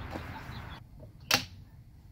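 A single sharp click about a second and a half in, over faint background noise.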